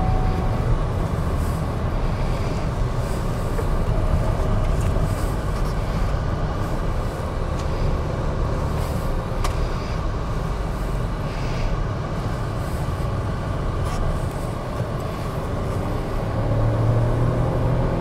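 MG Astor SUV driven hard on a race track, heard from inside the cabin: steady engine and road rumble, with a faint engine note that rises a little near the end.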